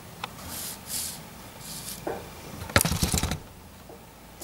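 A few short scratchy strokes of a pencil drawn across paper. About three seconds in comes a louder brief clatter of knocks, the sound of handling on the work surface.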